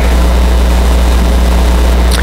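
A loud, steady low hum with an even hiss over it, starting and cutting off abruptly.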